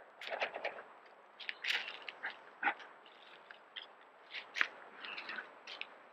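A black bear moving and nosing about right at the trail camera, making irregular crunches, scrapes and clicks close to the microphone.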